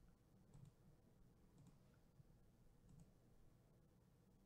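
Near silence with three faint computer mouse clicks about a second apart.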